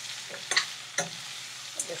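Diced bottle gourd frying in hot oil in a stainless steel pan, a steady sizzle, as a metal spoon stirs it, clinking against the pan twice.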